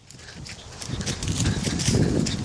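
Rustling and low, uneven rumbling of handling noise as a handheld camera is carried quickly through plants, building up over the first second.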